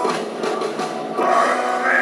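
Live rock concert sound heard from inside the arena crowd: a noisy wash of crowd and band, then many voices singing together from a little over a second in.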